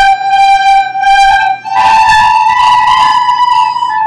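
A class of children playing soprano recorders together, holding long notes: a steady note for the first half, then stepping up to higher notes about halfway through. They are playing the song's opening phrase, G, G, G, A, then up to B, A.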